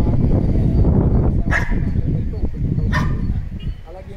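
A dog barking, with two sharp barks about a second and a half apart, over the low murmur of people talking.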